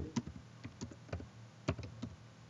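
Typing on a computer keyboard: a run of irregularly spaced key clicks.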